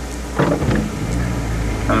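Car cabin noise while driving: a steady low rumble of engine and tyres on the road, growing louder about half a second in.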